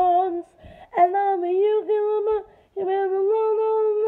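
A young woman singing a cappella in three sung phrases with short pauses between them, the later two mostly long held notes.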